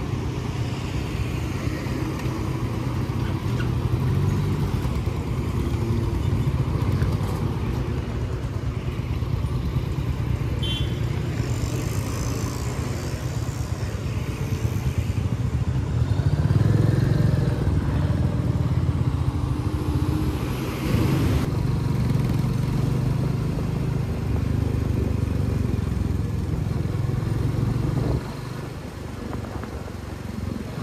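Motorcycle engines running, with the rider's own bike moving off and riding through city traffic; its engine note swells and eases with the throttle and drops off briefly near the end.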